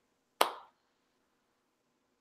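A single short, sharp click a little under half a second in, fading quickly, with dead silence around it.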